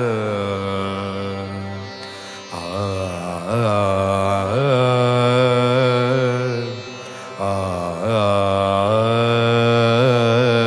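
Odissi classical song: a voice holds long, ornamented notes over steady accompaniment. The line breaks briefly twice between phrases.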